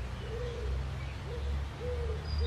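Pigeon cooing: a run of short, low, arched coo notes, repeating about every half second, with faint songbird chirps behind.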